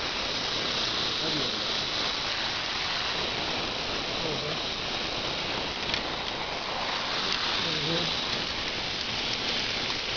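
VEX robot harvester's motors and treaded conveyor belt running, a steady whirring hiss as it drives forward collecting nuts, with a faint click or two about six and seven seconds in.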